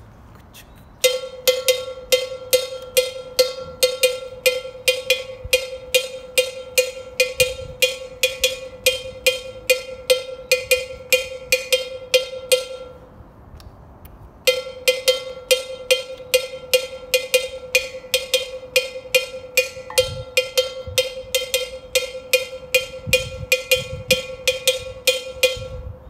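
Agogô bell struck with a wooden stick, playing the traditional candomblé de Angola rhythm: a steady pattern of ringing metallic strikes at about two to three a second. The pattern stops for a moment about halfway through, then starts again.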